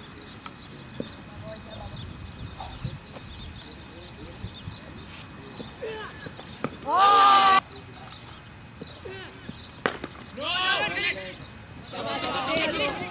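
Cricket players shouting across the field as a ball is bowled: one loud call about seven seconds in and more shouting near the end. A single sharp knock sounds just before the second burst of shouting.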